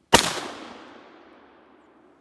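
A single 12-gauge Lanber shotgun shot: one sharp report about a tenth of a second in, followed by an echo that fades out over about a second and a half.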